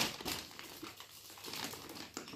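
Paper gift bag crinkling and rustling in short, soft bursts as a hand rummages inside it and pulls out a present.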